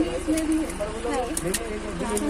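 Several people talking indistinctly over one another, with a low steady hum underneath.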